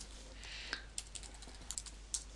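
Computer keyboard keys being typed: several irregular, quiet keystrokes as a username and password are entered, over a faint steady background hiss.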